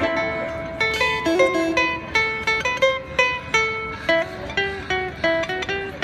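Ukulele and electric guitar playing an instrumental run of single plucked notes, about three or four a second, with no singing.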